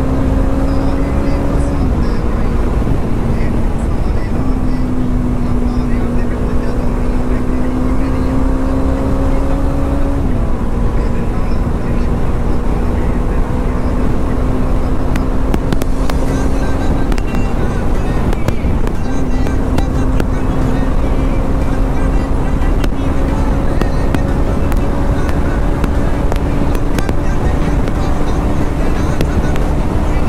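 Motorcycle engine running at road speed under wind rush, its steady note dropping and recovering a few times as the rider shifts gears.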